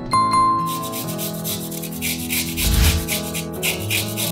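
Carrot being grated on a flat hand grater: repeated rasping strokes of the carrot against the blade, over background music.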